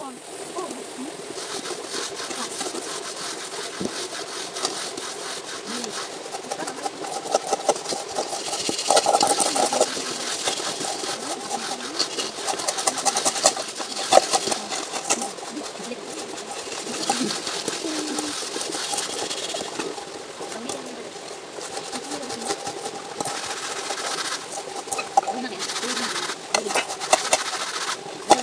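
Rapid, repeated scraping of sand against aluminium cooking pots as they are scrubbed clean by hand, with voices talking.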